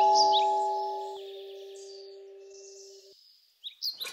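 Electronic musical doorbell chime, its last notes ringing on and fading away over about three seconds. A few faint bird chirps come near the end.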